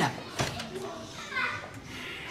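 Children's voices at play in the background, with a single sharp knock about half a second in.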